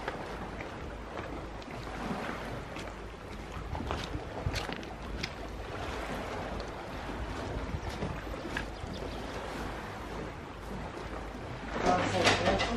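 Sea water lapping against a rocky shore, with wind on the microphone and a few short splashes.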